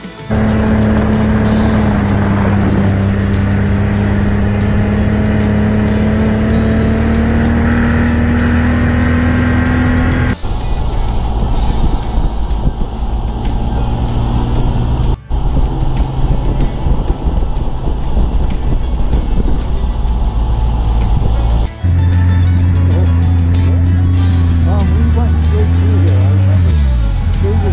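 Snowmobile engine running steadily while riding a snowy trail, heard in several short cut-together stretches; its pitch creeps up over the first ten seconds and drops away at the very end as the sled slows.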